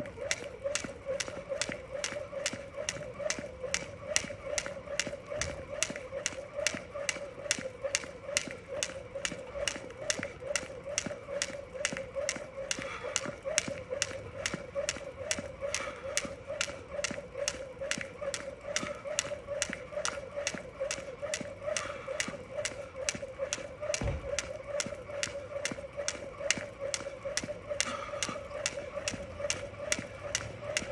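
Jump rope skipping: the rope slapping the ground in a steady rhythm of a little over two strikes a second, with a steady hum underneath. One heavier thud comes about two-thirds of the way through.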